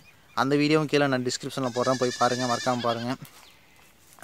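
A man speaking in Tamil, with a short pause near the end.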